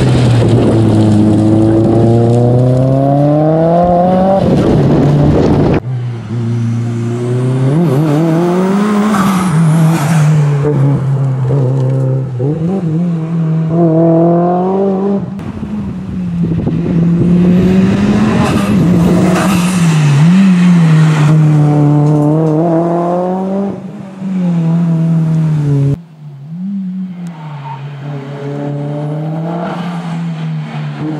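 Mitsubishi Lancer Evolution IX's turbocharged four-cylinder engine driven hard uphill. It revs up again and again, with the pitch falling back at each gear change or lift for a corner. The sound comes in several segments that jump abruptly from one to the next.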